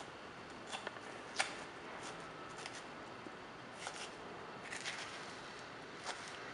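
A metal fork scraping through the flesh of a baked spaghetti squash half, pulling it into strands: faint, irregular scratching strokes, the sharpest about a second and a half in.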